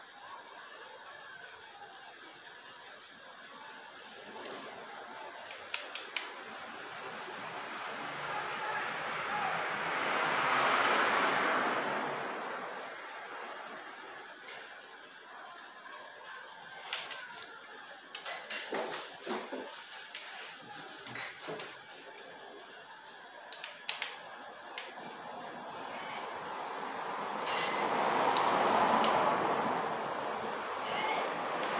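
Scattered light clicks and knocks of a hand tool and metal parts as a bicycle suspension fork is bolted back together, most of them in the second half. Two slow swells of rushing noise rise and fall, one about ten seconds in and one near the end, louder than the clicks.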